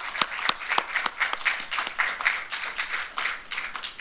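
A small audience applauding, with a few loud individual claps standing out over the rest, thinning out near the end.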